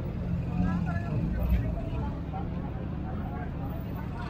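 Background voices of people talking over a steady low rumble of motor scooters and motorcycles running, which swells briefly about a second and a half in.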